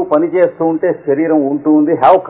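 Speech only: a man talking without pause, as in a lecture.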